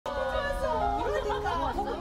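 A few women chatting, opening on some steady held notes.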